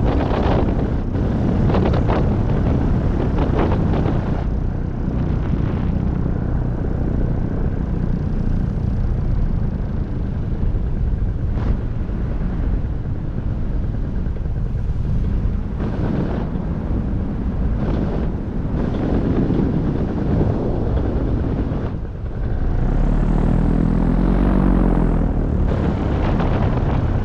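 Paramotor engine and propeller running steadily under wind buffeting the microphone. Near the end the engine note changes and grows louder for a few seconds.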